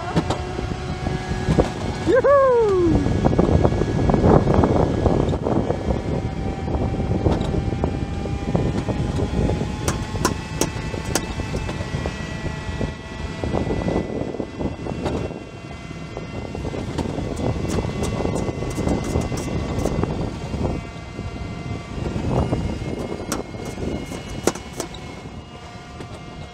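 Summer toboggan sled running down a stainless-steel trough track: a steady rumbling scrape, with occasional sharp clicks.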